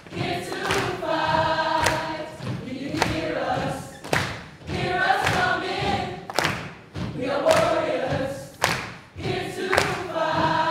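A young ensemble singing together in phrases of a few seconds, with brief breaks between them. Sharp percussive hits land roughly once a second, fitting stomps from the performers' movement.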